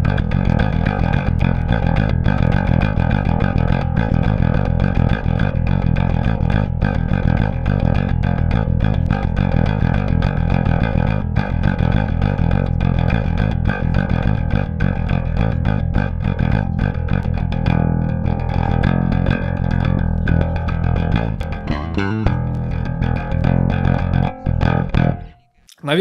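Passive KliraCort Jazz-Bass-style electric bass played fingerstyle through an amp: fast, aggressive death-metal riffing with quickly changing notes. It cuts off about a second before the end.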